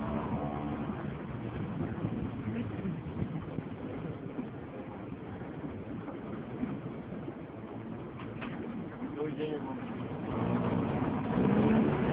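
Small river ferry's engine running slowly as the boat comes in to a floating landing, with a steady rough hum; it grows louder near the end, when people's voices come in.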